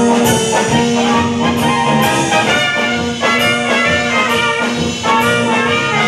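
Slovácko brass band (dechová hudba) playing live: trumpets and tubas with a drum kit, the brass holding long notes over a steady beat.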